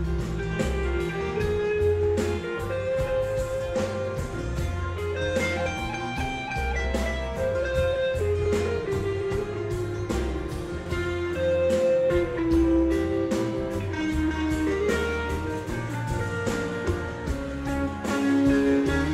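Instrumental break of a live blues-rock band: a guitar plays melodic lines over bass and drums keeping an even beat, with no singing.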